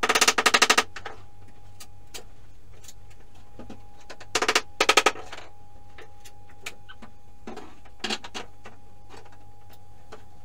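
Sped-up sound of old wooden subfloor boards being pried up and knocked loose with a bar: two bursts of rapid rattling knocks, one at the start and one about four seconds in, with scattered single clicks between.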